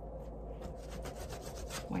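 A hand wiping a laser-cut birch plywood cutout with water: a run of short rubbing strokes on the wood, wetting it so the watercolor will bleed and blend.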